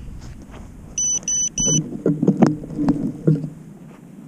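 Three short, high electronic beeps in quick succession about a second in, then a person laughing, with a few knocks from the drone being handled.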